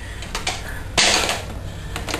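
Light clicks, then one sharp clack about a second in, from tools and metal bike parts being handled while a BMX pedal is being taken off.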